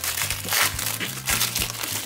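Foil baseball card wrapper crinkling and crackling as it is peeled open by hand, over steady background music.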